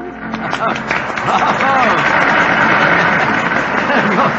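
Audience applauding with many voices mixed in, right after a sung melody ends; the applause builds about a second in and stays loud.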